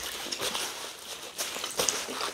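Eating sounds from close to the microphone: soft wet chewing and lip smacks as meat is bitten and eaten by hand, with a few short clicks scattered through.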